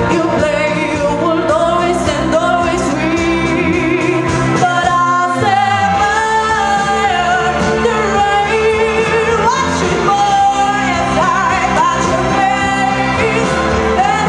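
A girl singing a pop song into a handheld microphone over a recorded backing track with a steady beat, her voice wavering with vibrato on held notes.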